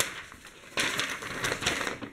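Sheets of printed paper rustling as they are grabbed and handled: a short rustle at the start, then a longer one from just under a second in until near the end.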